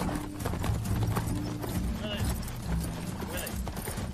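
Hooves of several horses clip-clopping at a walk on a dirt track, an uneven run of many overlapping hoofbeats.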